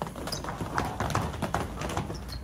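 Heavy battle ropes swung in waves, slapping the hard tiled floor in a quick, uneven rhythm of roughly four or five hits a second.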